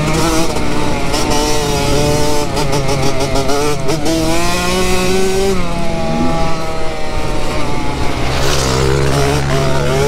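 A KTM 65 dirt bike's small two-stroke single-cylinder engine under way, its pitch rising and falling again and again with the throttle as it is ridden.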